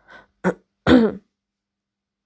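A woman clearing her throat: two short catches, then a louder, longer throat-clear that falls in pitch, over by just past a second in.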